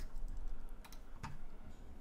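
A few scattered, faint computer keyboard keystrokes, isolated clicks over a low hum.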